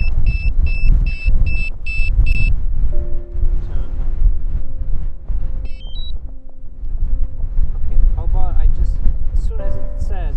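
DJI Mavic Pro remote controller beeping rapidly, about two and a half beeps a second, as an error alert for a wheel fault; the beeping stops about two and a half seconds in. Wind buffets the microphone throughout, and a short rising two-note chirp sounds about six seconds in.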